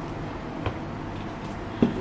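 Hot water poured from a stainless steel kettle into a glass mug, a faint steady trickle, then a sharp thump near the end as the kettle is set down on the countertop.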